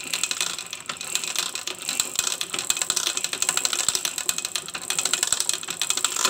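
Bare Yamaha Jupiter MX four-stroke single engine, cylinder head off, being turned over again and again with the kick-starter: a fast, continuous mechanical clatter of clicking gears and the kick-start ratchet. The engine is cranked to test that the oil pump lifts oil up to the head.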